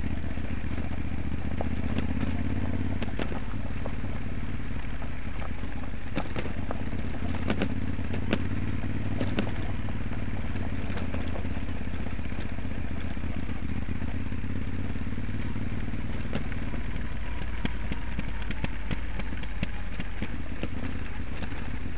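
Moto Guzzi Stelvio NTX's transverse V-twin engine running steadily at low speed on a loose gravel track, with sharp clicks and clatters of stones under the tyres, most between about three and ten seconds in.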